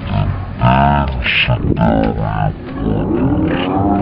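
A deep, low-pitched voice drawn out like a growl, in several stretches.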